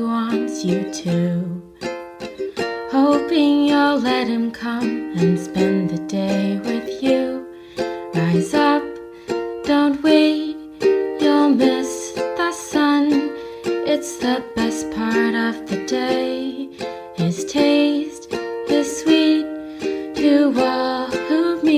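Instrumental interlude of a hymn: a plucked string instrument playing a melody over chords, with no singing.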